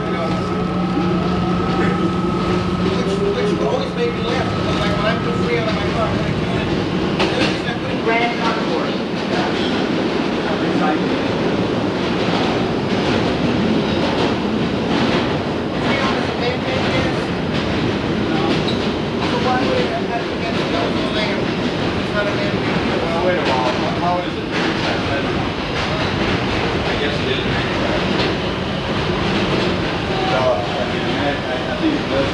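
R110A subway car's running noise heard from inside the car as it pulls out and runs between stations. A whine rises in pitch over the first few seconds while a steady hum stops about five seconds in. It then settles into a steady rumble with repeated clicking of the wheels over rail joints.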